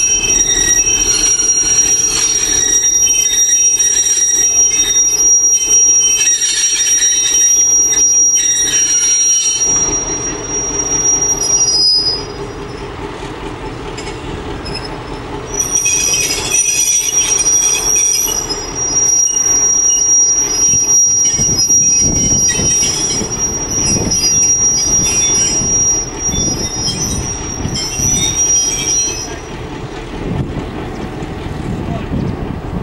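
Loud, steady high-pitched steel squeal from a CIE 121 class diesel locomotive rolling onto a turntable. After a few seconds' pause near the middle, the squeal returns as the turntable swings round with the locomotive on it.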